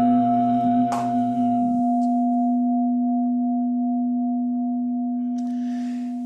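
A struck Buddhist bowl bell (singing bowl) rings on, its steady tone slowly fading. A low, steady chanting voice stops about two seconds in.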